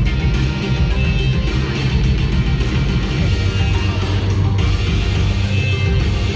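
Loud music with a steady beat, played over the stage's sound system.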